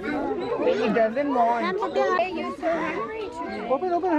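Several children's voices chattering and talking over one another.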